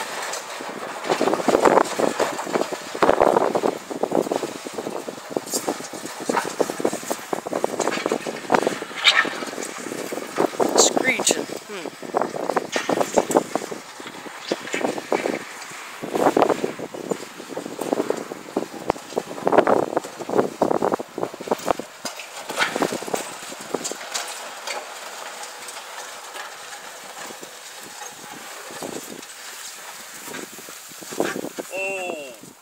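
Indistinct voices talking in irregular bursts, with no words clear enough to make out, quieter in the last third.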